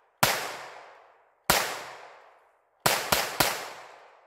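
Taurus TX22 .22 LR pistol fired five times: two shots a little over a second apart, then three in quick succession near the end, each followed by a fading echo. These are the last rounds in the magazine.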